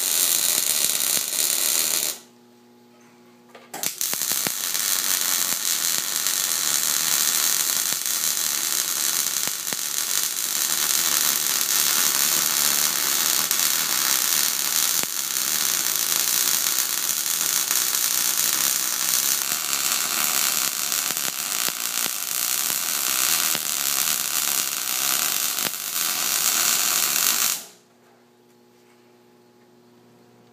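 MIG welder arc crackling and buzzing as a bead is run on steel, laying down the weld with little spatter. A short burst stops about two seconds in, then after a brief pause a long continuous bead runs until shortly before the end.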